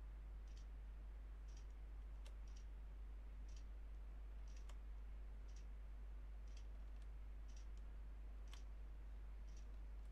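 Faint ticking about once a second, like a clock, over a steady low electrical hum.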